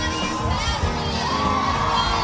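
A large crowd of spectators cheering and shouting as canoe racers pass, with high yells that rise and fall in pitch.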